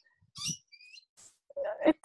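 A few short, high bird chirps in a pause in speech, followed by a woman's voice starting up again near the end.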